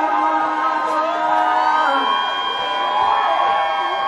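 Loud live concert music with singing, and the crowd singing along.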